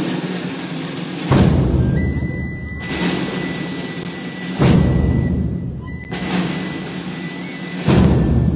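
Procession band playing a slow funeral march, with heavy drum beats every two to three seconds over sustained low chords.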